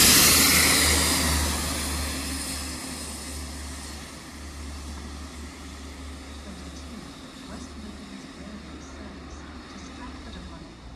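Engineering plant train of tank wagons passing through the station and drawing away, its rumble and hiss loud at first and fading over the first four seconds or so. A low steady hum remains after it has gone.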